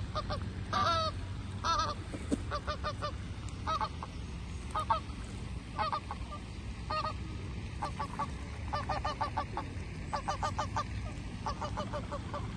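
Greylag geese honking: many short calls, often in quick runs of several, from a flock close by.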